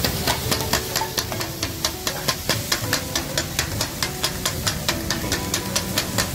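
Metal blades chopping kottu parotta on a flat iron griddle: a fast, steady clatter of about five strikes a second over the hiss of sizzling food.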